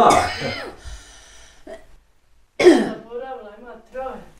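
Brief, unclear speech from an elderly woman: two short bursts of her voice with a quiet pause between them, about halfway through.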